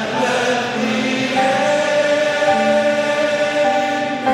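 A choir singing a hymn slowly, in long-held notes that change pitch about once a second.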